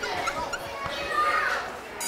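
Many children's voices chattering and calling out at once, overlapping.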